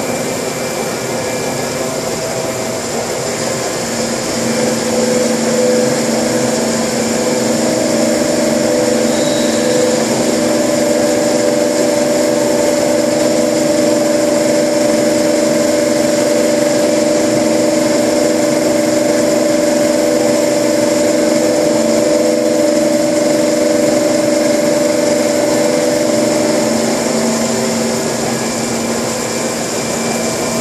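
Industrial grinding machine running with a steady whine of several held tones over a hiss; it grows louder about four seconds in and eases off near the end.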